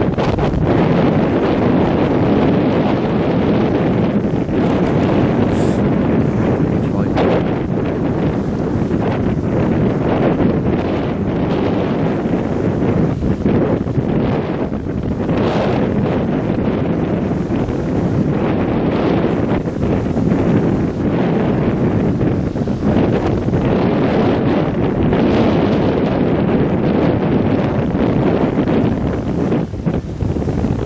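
Strong wind buffeting the camera's microphone: loud wind noise that swells and dips in gusts.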